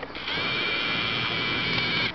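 A video camera's motorised zoom lens whining steadily as it zooms in, a high whine of several tones that starts a moment in.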